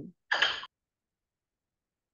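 The tail of a spoken word, then a short breathy exhale about half a second in, after which the audio cuts to dead silence, as a video call's noise gate does.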